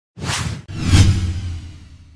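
Logo-animation sound effect: two whooshes, a short one just after the start and a louder one about a second in, the second trailing a low rumble that fades away near the end.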